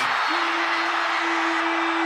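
Basketball arena crowd cheering loudly for a game-winning buzzer-beater. A steady single-pitched horn note starts about a third of a second in and is held throughout.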